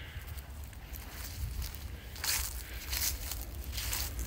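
Footsteps of a person walking across a garden, about five steps a little under a second apart, over a low rumble of wind or handling noise on a phone microphone.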